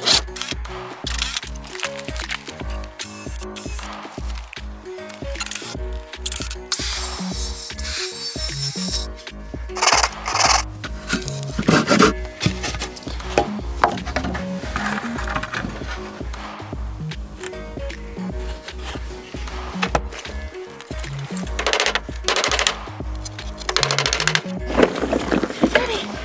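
Background music with a steady beat, with a few short bursts of noise from the woodworking beneath it.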